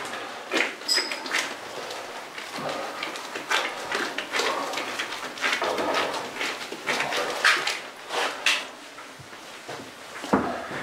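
Gloved hands packing minced meat into open tin cans, one portion per can: irregular soft rustles and light clicks of hands, meat and metal cans, with a brief high squeak about a second in.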